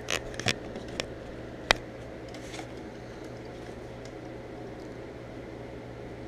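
A few light clicks of plastic Lego Bionicle parts being handled and fitted together, the sharpest about a second and a half in, over a steady faint low hum of room noise.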